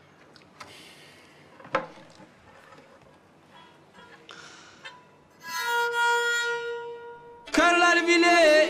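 Faint handling sounds and a sharp knock, then a Black Sea kemençe is bowed. One long note is held a little past the middle, and near the end a loud, lively melody begins.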